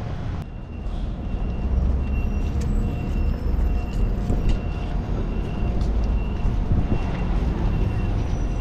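City street traffic running steadily at a busy crosswalk, with a short high beep repeating on and off over it.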